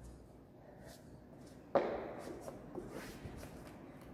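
A single thump a little before halfway through as hands and knees land on a gym exercise mat, followed by a few light taps and shuffling on the mat.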